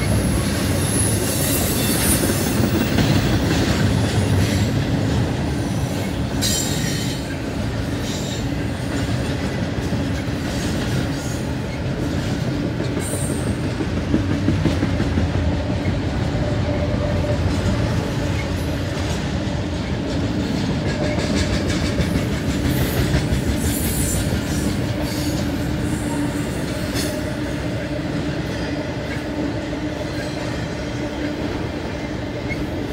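Double-stack intermodal freight train rolling past at close range: a loud, steady rumble of steel wheels on rail, with brief high-pitched wheel squeals now and then, one right at the start.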